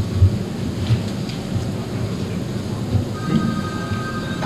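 Low rumbling room noise picked up by the table microphone, with a few soft thumps in the first second and two faint steady high tones near the end.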